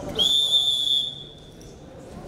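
Wrestling referee's whistle, one shrill blast of about a second that trails off, the signal for the wrestlers to start.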